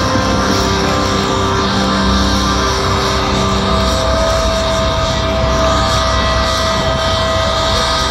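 Metalcore band playing live and loud over the PA, recorded from within the crowd: distorted electric guitars and drums, with long held notes.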